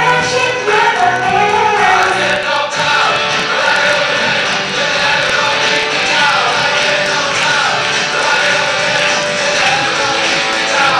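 A mix of 90s pop songs with sung vocals playing loudly from the hall's speakers. About three seconds in, the bass drops away as the mix changes.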